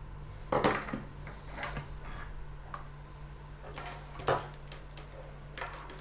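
Audio gear and cables being handled and set down on a wooden desk: a few scattered knocks and clatters, the loudest about half a second in and again just after four seconds, over a steady low hum.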